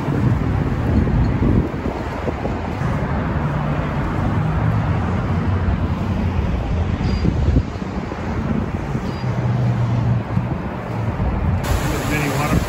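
Steady outdoor noise with a heavy, wavering low rumble: wind buffeting a handheld phone's microphone over the rush of river water.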